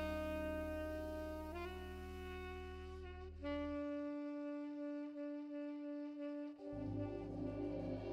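Saxophone playing long held notes that step to a new pitch a couple of times, over sustained organ chords. The low organ bass drops out about halfway through and comes back near the end with a pulsing bass line.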